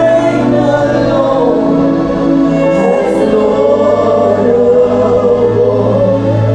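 Gospel worship song: a woman singing lead into a microphone over live instrumental backing, with more voices singing along. The low backing notes are held steadily beneath the melody.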